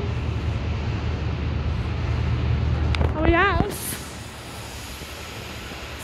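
Class 68 diesel locomotive running through the platform, with a steady low engine rumble that drops away about four seconds in as it passes. A short voice is heard around three seconds in.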